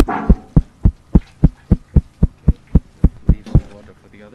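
A rapid, even series of dull knocks, close to four a second, that stops shortly before the end.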